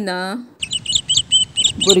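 Young songbird nestlings giving rapid, high-pitched begging chirps, several a second, as they gape for food.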